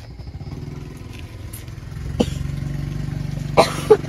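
A small engine running at a steady pulse, growing louder about two seconds in, with a few sharp clinks of spoons or bowls about two seconds in and twice near the end.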